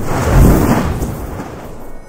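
Deep, noisy whoosh-and-rumble sound effect opening a logo animation: it starts suddenly, swells to its loudest about half a second in, then fades away over the next second and a half.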